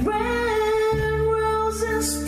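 A song: a woman's voice holds one long sung note over bass and guitar accompaniment.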